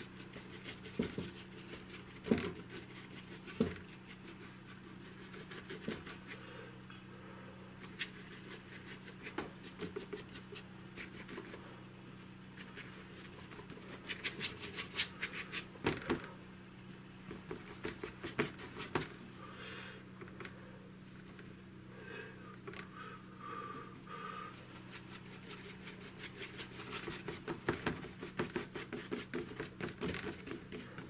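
Bristle brush scrubbing and dabbing oil paint onto a hard MDF board: dry scratchy strokes and taps, coming in quick flurries about halfway through and near the end, over a low steady hum.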